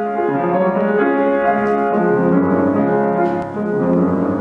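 Piano playing a classical piece in a steady, running figure.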